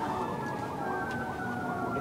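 Emergency siren wailing in the earthquake simulator's soundtrack, its tone slowly falling.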